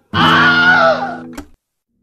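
An acted scream over a held acoustic guitar chord, lasting about a second and a half and cutting off suddenly.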